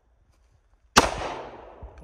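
A single pistol shot about a second in, its echo ringing and dying away over most of a second.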